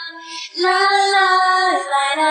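Solo female pop vocal isolated from its backing track, singing held notes: one note trails off, a brief hiss comes just before half a second in, then a new sustained note starts and steps down in pitch near the end.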